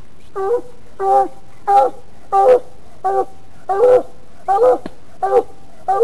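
Coonhound barking in a steady run of short chop barks, about one and a half a second.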